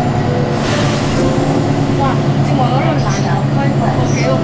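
City bus running, heard from inside the cabin as a steady low drone, with a brief hiss about half a second in.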